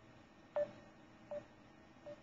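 Short electronic beeps from a voice call being placed to a contact who can't be reached after a dropped connection: two brief tones about three-quarters of a second apart, the first louder.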